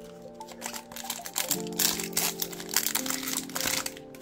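Foil trading-card booster pack wrapper crinkling as it is handled and torn open, in a dense crackle from about a second and a half in. Background music with held notes plays throughout.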